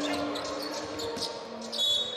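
Basketball game play on a hardwood court: a ball bouncing, with short knocks and a brief high squeak near the end, typical of a player's sneaker, over a steady background hum of the arena.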